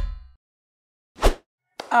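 Intro music fading out, then about a second of silence broken by a single short pop sound effect.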